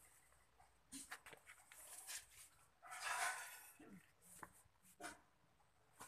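Faint short whines from an animal, a few times, among soft rustling and a few clicks.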